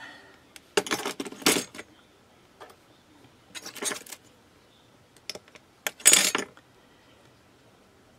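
Handling sounds of small pieces of firm polymer clay cane being picked up and set down on a work surface: short clusters of light clicks and clatter, about four of them with quiet gaps between.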